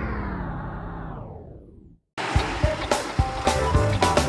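Outro music slides down in pitch and fades out over the first two seconds. After a brief silence, a new music track starts with sharp percussive hits.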